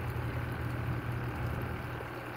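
A steady low hum with faint water movement as a hand gropes in a bucket of water to catch a fish.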